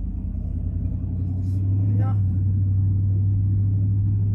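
A car driving, heard from inside the cabin: a steady low rumble of engine and road noise that grows a little louder about a second and a half in.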